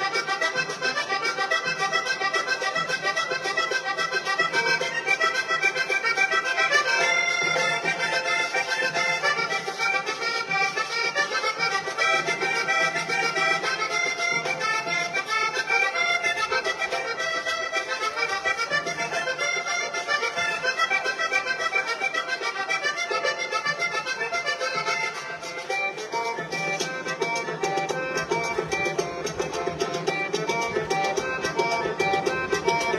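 Vallenato trio playing an instrumental passage in paseo rhythm: a diatonic button accordion plays a fast melody over the caja drum and the scraped guacharaca.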